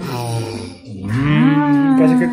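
Two long, low mooing calls: the first lasts under a second and breaks off, and the second rises and is held to the end.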